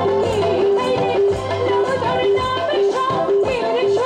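Live Bangladeshi regional folk song: a woman sings a wavering melody into a microphone over a band, with a held steady note and a drum beating about twice a second.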